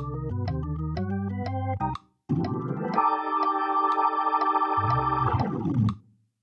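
Hammond B3-style organ sound from a Nord Stage 3 stage keyboard playing a fast swung lick of half-step approach notes around a C minor triad over a bass line. It stops briefly about two seconds in, then sweeps quickly upward into a held chord that cuts off near the end.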